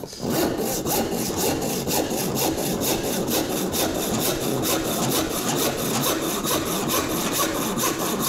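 Small hand rip saw cutting with the grain down a board clamped upright in a vise: a steady run of quick, evenly paced push-and-pull strokes.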